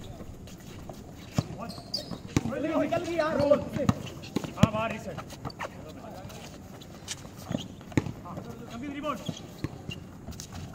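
A basketball bouncing on an outdoor concrete court, heard as scattered sharp knocks, with players shouting to each other between about three and five seconds in and again near the end.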